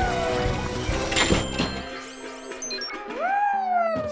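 Cartoon background music with sound effects: a long falling glide, two short hits a little over a second in, and a rising then falling glide near the end.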